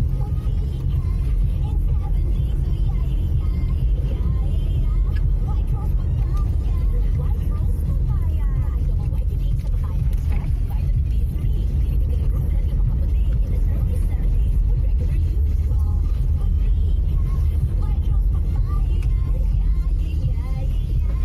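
Steady low rumble of a car driving on an unpaved dirt road, heard from inside the cabin: engine and tyre noise on the rough surface.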